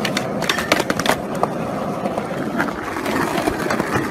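Skateboard wheels rolling on concrete, with several sharp clacks of the board against a metal rail and the ground in the first second or so, as the trick fails and the skater falls.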